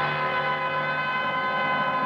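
Orchestral theme music holding one long brass chord.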